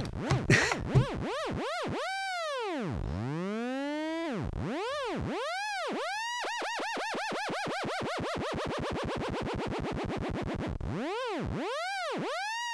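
Eurorack modular synthesizer patch built around a Make Noise Maths, playing electronic 'piou' chirps: a bright, overtone-rich tone swooping up and down in repeated arcs. The swoops speed up into a rapid warble in the middle and slow back into single long swoops near the end.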